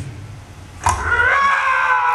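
A cartoon monster voice, Mike Wazowski's, lets out one long high-pitched roar over a PA system. It starts suddenly about a second in and slides slowly down in pitch.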